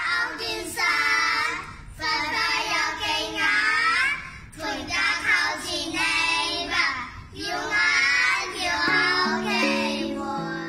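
Children singing a Chinese folk-style song in short phrases of about two seconds, over instrumental backing, with long held notes coming in near the end. The lyrics ask a father gone to the Gold Mountain to send money home.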